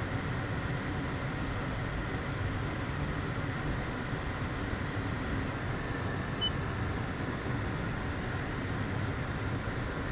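Steady air and hum inside a car's cabin, from the climate-control fan blowing with the car running. A brief faint beep comes about six and a half seconds in.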